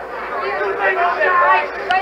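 Several men talking over one another in a crowd, over a steady hum.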